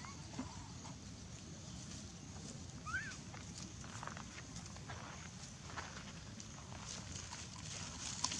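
Faint outdoor ambience: a steady high hiss and a low rumble, with a few soft rustles. One brief rising squeak comes about three seconds in.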